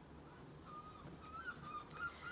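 White disposable gloves being pulled onto the hands, the rubber giving faint, high, wavering squeaks with a few small snaps near the end.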